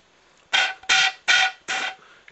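B-flat flute blown in four short tongued puffs about 0.4 s apart, mostly rushing air with only a faint note under it. It is the breathy, note-less sound of an embouchure hole not yet set right against the lip.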